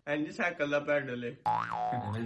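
A man's voice, then about a second and a half in a cartoon-style boing: a tone that swoops up, falls back and holds.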